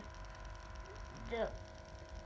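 A young child reading aloud slowly, word by word, saying a single word about a second in, over a faint steady background hum.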